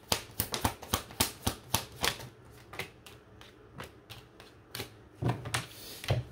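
A deck of tarot cards being shuffled by hand: a quick run of card flicks, about four a second, for the first two seconds. Then a few scattered taps, and a soft thud near the end as cards are laid down on the table.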